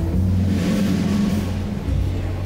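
Live jazz trio of upright double bass, hollow-body electric guitar and drum kit playing. In this stretch the drums and bass carry it, with cymbal wash over a low rumble and few clear guitar notes.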